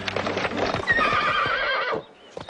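Horse hooves clip-clopping, then a horse whinnies with a wavering call from about a second in. The sound cuts off suddenly at the end.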